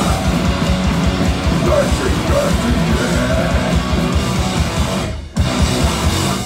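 Live crust punk band at full volume: distorted guitars and bass over fast, driving drums, with shouted vocals. The song breaks off about five seconds in, then one last loud hit rings on.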